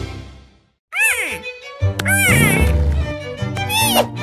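Background music fades out, then a cartoon character gives three short, high-pitched wordless calls, each rising and falling in pitch, over light music.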